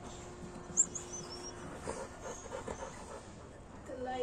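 American Pit Bull Terrier panting with its mouth open, a run of quick, even breaths in the middle seconds. A sharp click about a second in is the loudest sound.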